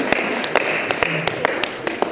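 A series of about eight short, sharp taps at uneven spacing over two seconds, heard over a faint hubbub.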